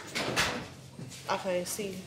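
Putty knife scraping and stirring through thick plaster in a plastic tub, loudest about half a second in, with fainter scrapes after. A short bit of voice is heard in the second half.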